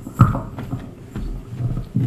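Footsteps: several heavy, uneven thumps, the loudest about a quarter of a second in.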